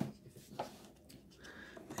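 Faint scratchy rubbing of fingers handling a small cardboard toy box, in two short patches near the start and near the end.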